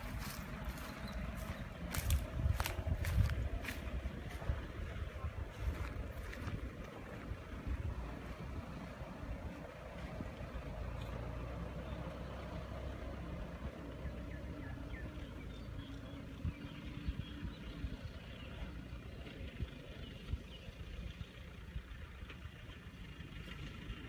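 Engine of a small dump truck loaded with soil, running as it drives away along a dirt track, the sound slowly growing fainter. Several sharp clicks and knocks in the first few seconds.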